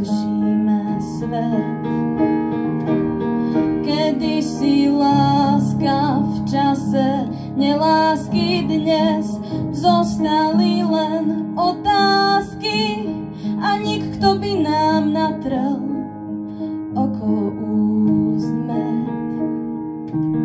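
A woman singing a slow pop ballad with upright piano accompaniment; the long sung notes waver with vibrato, and the voice is strongest in the middle, leaving the piano more to itself near the end.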